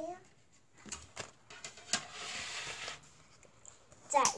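Quiet handling of plastic LEGO parts: a few light clicks, then about a second of rustling as a grey LEGO baseplate is set out on the table.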